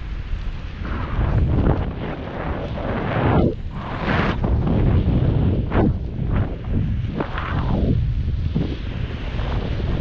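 Wind buffeting the microphone of a camera held aloft under a parasail: a loud, low rumble that swells and drops in irregular gusts.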